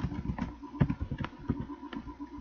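Computer keyboard keys being typed, a handful of separate, irregularly spaced clicks as a short word is entered.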